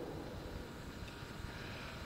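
Quiet, steady background noise of the room and recording: an even hiss with a low rumble beneath, and no distinct events.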